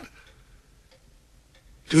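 A quiet pause in dialogue with faint ticks about every half second, and speech starting again near the end.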